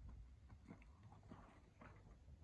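Near silence, with a few faint, scattered ticks.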